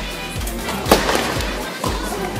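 A tennis ball struck sharply by a racket on a serve, about a second in, followed by a softer knock near the end. Background music plays underneath.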